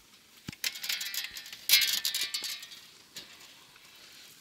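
A metal door latch clicks open, then a wooden pallet-board door is pulled open with a rough, creaking scrape lasting about two seconds, loudest midway.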